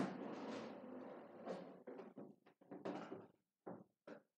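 A sharp thump, then a second or so of rustling and scraping, then a string of short knocks and rustles: objects being handled close to the microphone.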